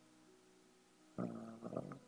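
Near silence with faint room tone, then a voice saying a hesitant 'uh' a little past the middle.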